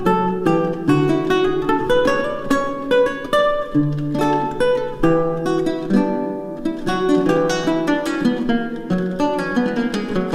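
Solo multi-course Renaissance lute played fingerstyle: a volt, a dance in triple time, made of plucked chords and quick runs of single notes that ring on over one another.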